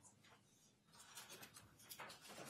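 Near silence with faint rustling of paper, a little stronger in the second half.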